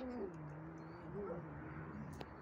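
Domestic cat giving a long, low yowl that slides down in pitch and then holds, with a brief upward wobble about a second in: the defensive moaning of a frightened cat.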